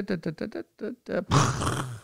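A man laughing in a quick run of short chuckles, then letting out a long breathy sigh in the second half.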